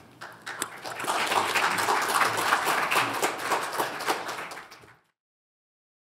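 Audience applauding: a dense patter of many hands clapping that builds over the first second, holds, then fades and stops about five seconds in.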